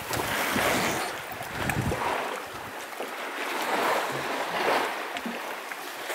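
Wind rumbling on the microphone for the first two seconds, over a steady wash of sea water lapping around a small boat.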